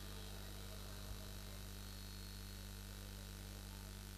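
A quiet pause holding only a low, steady electrical hum from the microphone and sound system, with a faint high whine over it and one small click about a second in.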